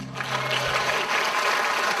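Audience applause breaking out at the end of a song for cello and acoustic guitar, while the final low note rings and fades out about a second in.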